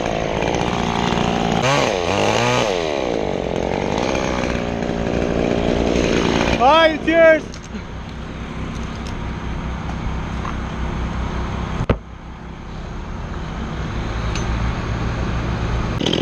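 Two-stroke chainsaw (a Stihl top-handle saw) running, revving up and down in the first few seconds, then running steadily and building again toward the end. A short shouted call comes about seven seconds in, and a sharp click just before the saw drops back.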